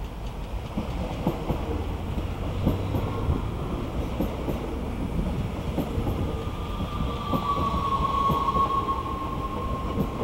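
NS Sprinter Lighttrain (SLT) electric multiple unit passing close: rumble of the wheels on the rails with irregular clicks over the rail joints. A whine comes up about seven seconds in and sinks slightly in pitch.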